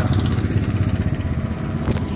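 Steady low engine rumble with road and wind noise from a vehicle driving along at speed.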